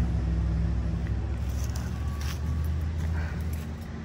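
Car engine idling, a steady low hum heard from inside the cabin, slowly fading.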